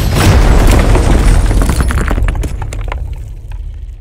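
Cinematic title-card sound effect: a loud, deep boom with a long low rumble, with crackling, crumbling debris through the middle, slowly fading toward the end.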